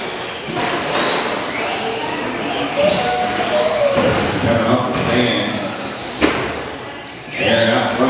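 Several electric RC short-course trucks running in a large hall, their motors whining and rising and falling in pitch as they accelerate and brake. A sharp knock comes about six seconds in, a truck landing or striking the track boards.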